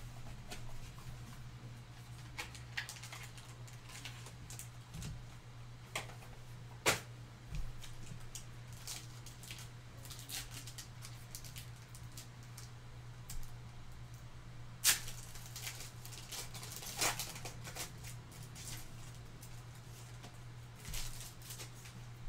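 A trading-card pack's foil wrapper torn open by hand and the cards handled: faint scattered crinkles and clicks, with a sharper snap about seven seconds in and another about fifteen seconds in, over a steady low hum.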